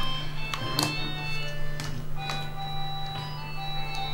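Background film score: sustained electronic keyboard tones with sharp struck notes scattered through, over a steady low hum.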